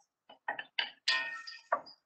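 A utensil scraping and clinking against a red enamelled pot as sliced leeks are tossed in hot coconut oil: a handful of short clatters, with one briefly ringing clink about a second in.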